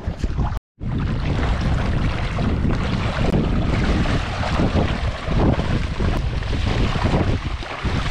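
Wind buffeting the action camera's microphone in a loud, uneven rumble, mixed with water sloshing and splashing from wading through shallow water. The sound cuts out completely for a moment just under a second in.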